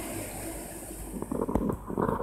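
Low rumbling under a steady hiss on the camera microphone. A run of irregular bumps and knocks begins a little past halfway, typical of the camera and board being handled.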